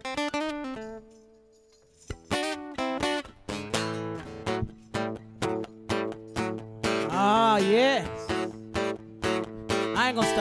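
Live blues intro on acoustic guitar: a few plucked notes, a brief pause about a second in, then the guitar and conga drums start the song together with a steady beat. Near the end the singer adds a short wordless vocal line that slides up and down in pitch.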